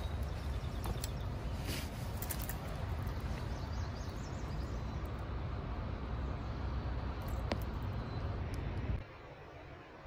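Low, steady wind noise buffeting the microphone, with a few sharp clicks from handling of the rod. The low noise cuts off suddenly about nine seconds in.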